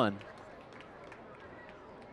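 Faint, steady background murmur of a ballpark crowd between pitches, with no distinct cheers or impacts.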